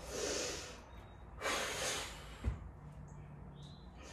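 A woman breathing hard with exertion during a weighted exercise: two forceful exhalations about a second and a half apart, then a short thump.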